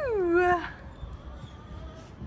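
Newborn calf bawling: one call falling in pitch that ends under a second in.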